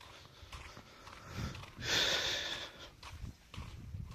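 A single breathy rush of air close to the microphone about two seconds in, like a person's sniff or sharp exhale, over a faint low rumble.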